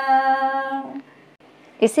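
A woman's solo voice holding the final sung note of a Kumauni folk song at one steady pitch, ending about a second in. Speech begins near the end.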